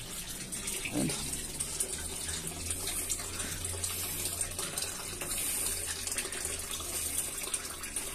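Water running steadily into an aquaponics fish tank and splashing on its surface, with a low steady hum underneath.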